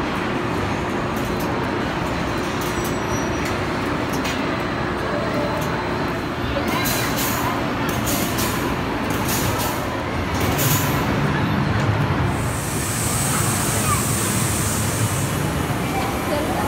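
Indoor amusement-ride din with voices throughout. A long hiss of compressed air runs for about three seconds near the end, from the spinning car ride's pneumatic arms.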